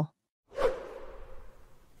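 A whoosh transition sound effect that starts suddenly about half a second in and fades away over about a second.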